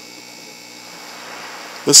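A steady background hum with faint even tones, then a voice begins speaking near the end.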